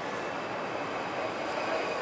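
A train crossing a railway bridge: a steady running noise with faint high squealing tones from the wheels.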